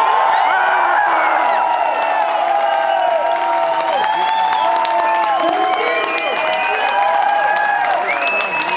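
Concert audience cheering and whooping with applause right after a rock song ends: many voices rise and fall over steady clapping.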